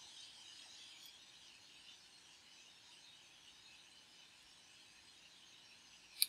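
Near silence: faint steady room hiss.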